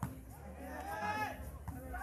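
Faint voices of players and onlookers around the court, one voice calling out briefly about halfway through, over a low steady background.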